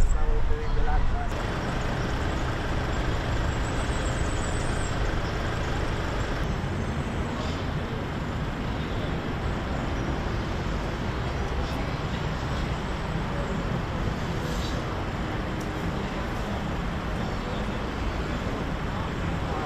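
Steady road traffic noise: a continuous rush of passing cars at an even level.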